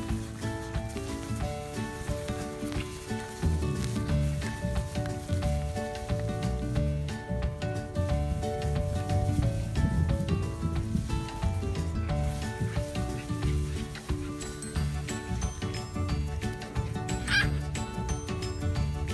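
Background music: a melody of short notes, with a low pulsing beat joining about three and a half seconds in.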